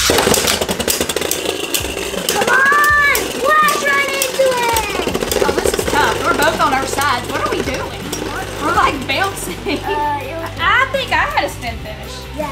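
Two Beyblade spinning tops, a Metal-series Burn Phoenix and a Burst Cho-Z Revive Phoenix, launched with ripcords at the start, then spinning and clashing in a plastic stadium with a rapid, rattling clatter of hits.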